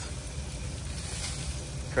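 Chicken wings sizzling on a charcoal grill's grate, over a steady low rumble.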